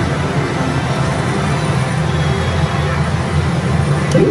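Steady, loud din of a pachislot hall: many slot machines' music and effects blending into a dense roar.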